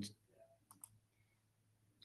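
Near silence broken by two faint computer mouse clicks in quick succession, just under a second in.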